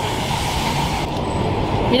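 Steady street traffic noise: a continuous rumble and hiss with no distinct events, its hiss thinning about a second in.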